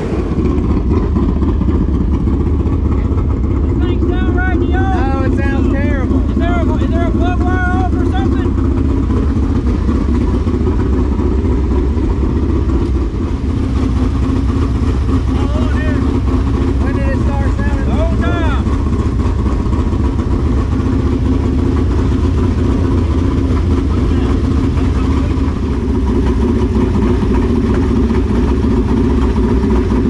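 A dirt late model's crate V8 idling steadily with its hood open while the crew works over the engine. It has been running rough, and the cause turns out to be a loose spark plug that came out with its plug wire.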